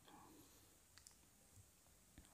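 Near silence: room tone with a few faint clicks about a second in.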